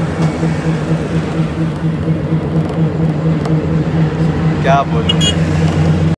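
Steady drone of a bus engine heard inside the passenger cabin, with a short rising tone near the end.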